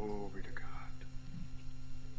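A voice briefly murmuring, then a soft whisper about half a second in, like quiet prayer, over a steady low electrical hum.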